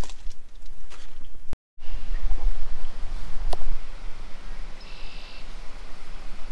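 Wind rumbling on the microphone with camera handling noise, broken by a brief dropout about a second and a half in. A short high chirp comes near the end.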